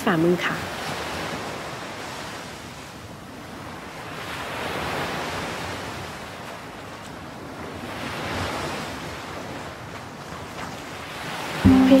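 Ocean surf: waves washing in and drawing back in a slow, even hiss, swelling about four to five seconds in and again around eight seconds.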